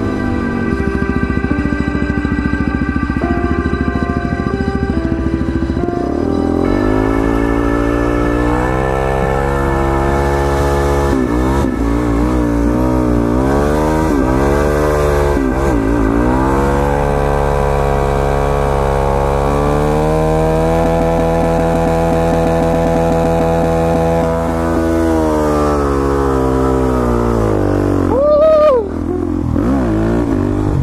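Suzuki DR-Z400SM single-cylinder supermoto engine revved hard in a burnout, its pitch swinging up and down and held high for several seconds against the rev limiter before dropping away. Background music plays over the first few seconds before the engine takes over.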